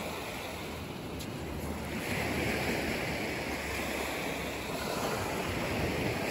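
Small waves washing up on a black sand and pebble beach and drawing back, swelling about two seconds in and again near the end, with wind rumbling on the microphone.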